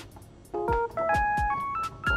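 Trap beat with kicks that drop in pitch and hi-hats, joined about half a second in by a quick run of Lounge Lizard EP-4 electric piano notes played in a blues minor scale through the Autotonic key trigger.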